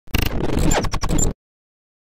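A scratchy, noisy intro sound effect lasting just over a second, cutting off suddenly.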